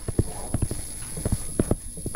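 Stylus pen tapping and scratching on a touchscreen while handwriting a word: a quick, uneven string of sharp taps, about six a second.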